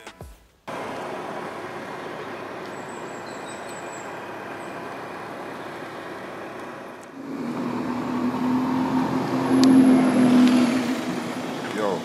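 Steady background noise of road traffic. About seven seconds in it grows louder, as the steady hum of a car engine comes in.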